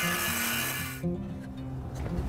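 Cordless circular saw cutting through a 2x4 board, the cut ending abruptly about a second in. Background music plays underneath.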